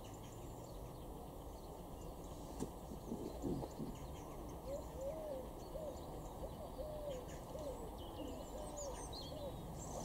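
A bird calling: a run of short, soft hooting notes, about two a second, starting about five seconds in.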